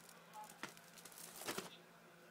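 Faint handling noise: light rustling with a soft click about two-thirds of a second in and a couple more around a second and a half in, from plastic VHS cassettes and cases being picked up and turned over.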